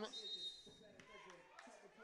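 Faint ambience of a 3x3 basketball game on an outdoor court, with a thin high tone held for under a second near the start and a single click about a second in.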